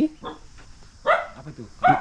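A dog barks about a second in, with a second short sound near the end.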